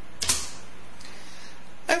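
A short, sharp click-like noise about a quarter second in, then steady background hiss on the feed; a man's voice starts again near the end.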